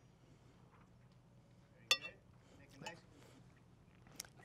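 Quiet serving sounds: a spoon clinks once against the cast iron sauce pot about two seconds in, with a fainter knock a second later.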